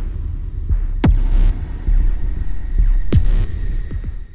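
Logo-sting sound design: a deep, throbbing bass drone with two sharp impact hits, one about a second in and another about three seconds in.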